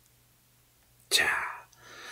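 Speech only: about a second of near silence with a faint low hum, then a man's voice saying the single Korean word "ja" ("now").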